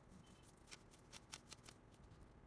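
Faint rustling and rubbing of a cloth being wiped along a plastic-insulated power cord, with about five soft scratchy strokes in the second half.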